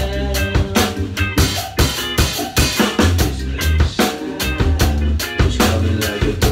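Acoustic drum kit played with sticks along to a ska backing track. Snare, rimshot and bass drum strokes sound over sustained bass notes and other pitched backing parts.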